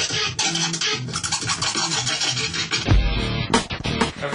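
Turntable scratching, quick back-and-forth strokes of a record over a music track, with a heavy low hit about three seconds in.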